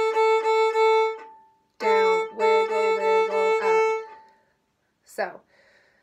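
Violin's open A string bowed in short, evenly repeated strokes, the "down, wiggle, wiggle up" rhythm, played twice with a short pause between. A woman's voice sings along during the second run.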